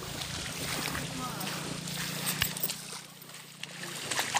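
Footsteps splashing and sloshing through a shallow stream and wet sand, with faint voices.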